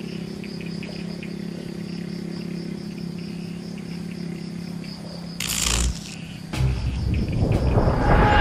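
Insects chirping in a steady, pulsing high trill over a low hum. About five and a half seconds in, a loud whoosh cuts in. From about six and a half seconds a louder rushing noise builds toward the end.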